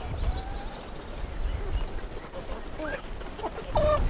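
Chickens and a young turkey feeding in a pen, making scattered soft peeps and chirps over a low rumble of wind on the microphone.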